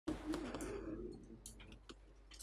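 A low, wavering cooing tone for about the first second, then a few light clicks from a phone being handled at a lectern.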